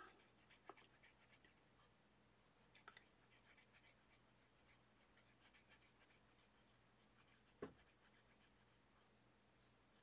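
Faint scratching of a permanent marker stroking along lines on paper, in short irregular strokes, with one soft tap a little past three-quarters of the way through.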